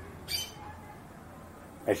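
Quiet room tone with a low hum and a brief high chirp about a third of a second in; a man's voice starts speaking near the end.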